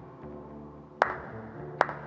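Two sharp single hand claps, about a second in and near the end, over soft background music: the first scattered claps of a small group's applause.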